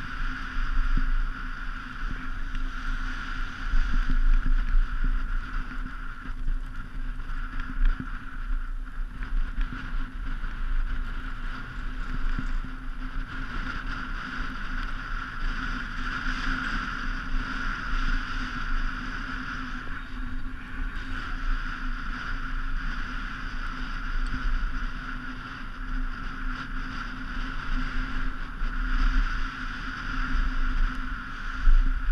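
Steady rush of wind buffeting the camera's microphone, with a low rumble that rises and falls, together with skis sliding over packed snow during a continuous downhill run.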